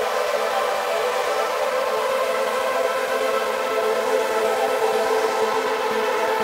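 A sustained, droning synthesizer pad chord in an electronic house mix: a beatless breakdown with no kick drum and the bass cut away.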